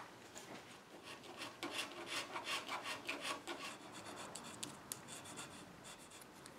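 Steel blade scraping glue off a clamped wooden mirror-frame joint: a quick run of short scraping strokes, then lighter scrapes and a few small clicks.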